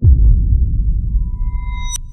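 Production-logo sound effect: a deep bass boom hits at once and slowly dies away, while a high, pure ping-like tone swells in over the second half and ends in a sharp click.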